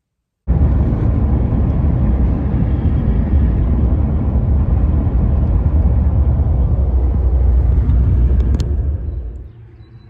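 Steady road and engine rumble inside a moving car's cabin, loud and deep, starting sharply about half a second in and dropping away shortly before the end. A brief click sounds near the end.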